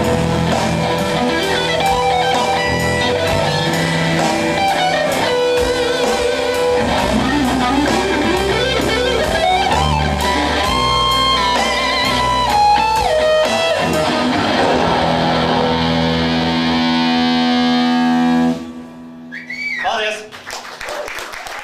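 Electric guitar playing a lead melody with pitch bends and vibrato over a rock band with a steady beat, ending on a held chord that cuts off sharply about 18 seconds in.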